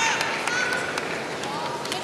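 Kendo fencers' drawn-out kiai shouts, faint and held on one pitch, over the steady noise of a large arena, with a sharp click right at the start.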